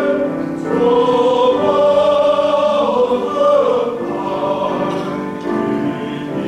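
Men's choir singing a hymn in sustained chords, breaking briefly for a new phrase just under a second in.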